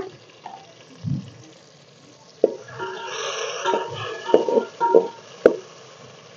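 A metal ladle stirring chopped tomatoes in oil in a steel pot. From about two and a half seconds in, it clinks against the pot several times with short ringing knocks.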